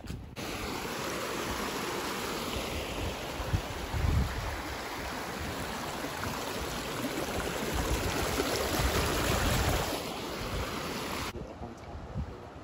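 Shallow creek water running over rocks in a small riffle, a steady rushing that starts and stops abruptly. Low rumbles of wind on the microphone come about four seconds in and again later on.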